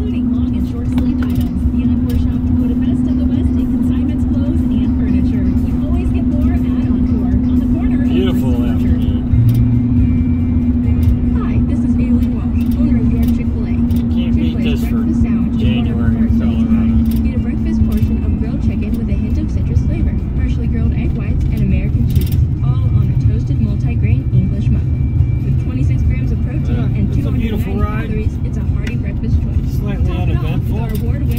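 Inside a moving car's cabin: the car radio plays a voice with music under it, over the steady drone of the engine and tyres on the road.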